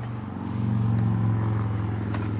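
A car driving past, its low engine hum swelling about half a second in and easing off slowly.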